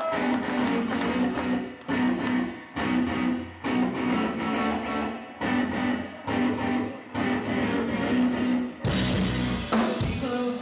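A live rock trio of electric guitar, bass and drums playing a choppy, stop-start riff with short breaks between phrases. The sound thickens into a fuller, steadier wash near the end.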